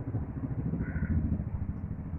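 A low, uneven rumble from a pot of vegetables simmering on the stove. A spoon starts stirring ground coconut into it near the end.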